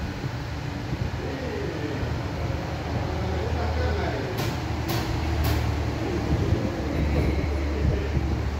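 Toyota Hilux 3RZ 2.7-litre four-cylinder engine idling steadily, with three sharp clicks about half a second apart a little past the middle.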